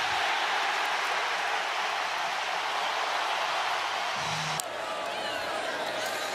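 Large football stadium crowd cheering loudly and steadily as the opponents' field goal attempt misses. The noise drops suddenly about four and a half seconds in to a quieter crowd murmur.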